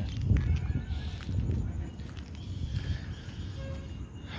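Low, uneven rumble of outdoor background noise, with a few faint clicks and brief faint distant tones.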